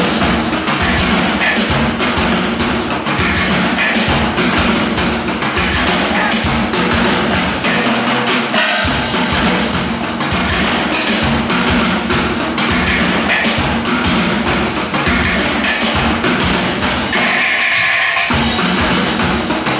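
A drum ensemble beating steel oil barrels with sticks: fast, continuous rhythmic metal percussion.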